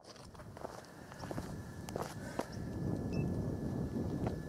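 Outdoor ambience fading in from silence: a low rumble that grows from about a second in, with a few scattered light taps in the first half and a faint steady high tone.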